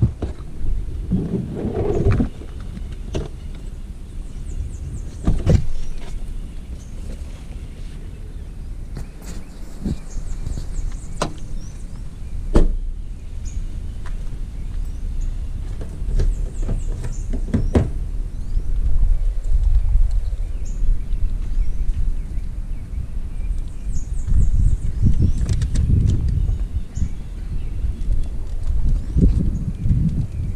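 Knocks and thuds of a car's boot and doors being handled, a handful of sharp ones spread through, over a steady low rumble of wind and handling on the microphone.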